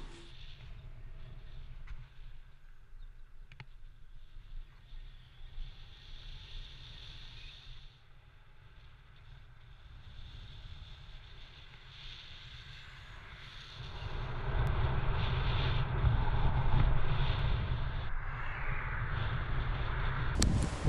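Wind and road noise on a helmet-mounted action camera's microphone while riding an electric scooter: a low, steady rumble that grows clearly louder about two-thirds of the way in.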